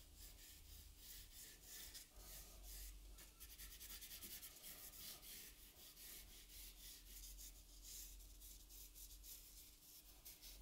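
Faint scratching and rubbing of a soft stick of charcoal dragged across drawing paper in quick repeated strokes, with brief pauses between them.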